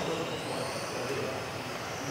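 Radio-controlled model cars racing on an indoor track, their motors giving a high whine over a steady hum of the hall.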